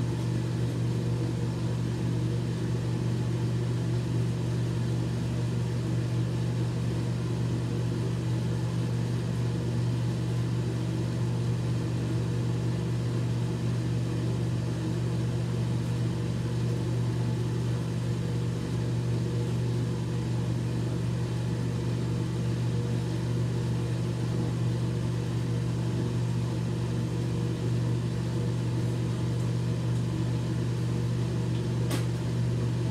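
A steady low machine hum that does not change.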